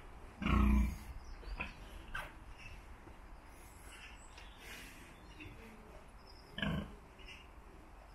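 A farm animal calling with short low sounds: one about half a second in, a shorter one near seven seconds, with quiet between.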